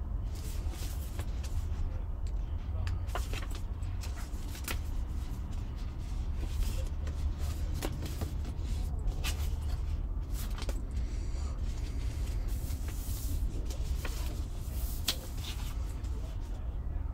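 Paper being handled: pages of a journal rustling and flipping, with scattered light taps and crinkles, over a steady low hum.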